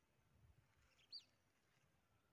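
Near silence with a single short, high bird chirp about a second in.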